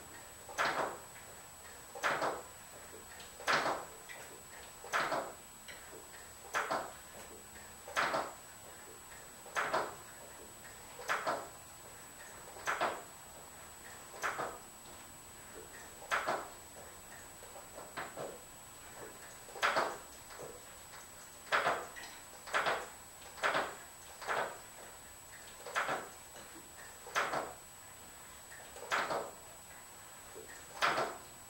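A 1967 VW Beetle's brake pedal is pumped over and over to bleed the brakes, with a short sound on each stroke. The strokes come about every second and a half, roughly twenty in all, at an even steady pace.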